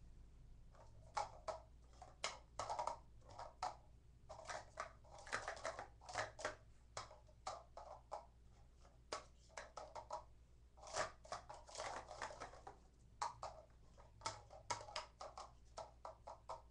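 Plastic Speed Stacks sport-stacking cups clicking and clattering as they are quickly stacked up into pyramids on a tiled ledge, in irregular runs of rapid taps.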